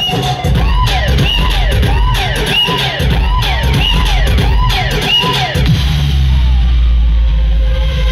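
Loud DJ music over a sound system with heavy bass. A melodic phrase rises and falls in arches about twice a second, then gives way to a held bass note after about five seconds.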